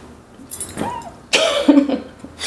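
A woman's short breathy laugh in two bursts, the second louder and voiced.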